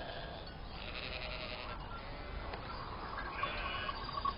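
Sheep bleating in the background, a couple of faint bleats, one about a second in and another near the end.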